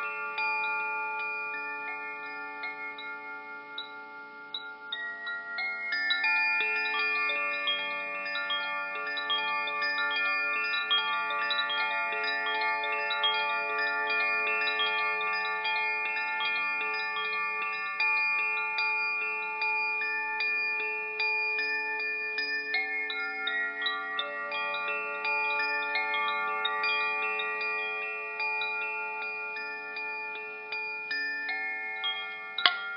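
Wind chimes ringing continuously, with many small overlapping strikes and long sustained tones. The sound dips slightly a few seconds in, then grows louder about six seconds in and holds steady.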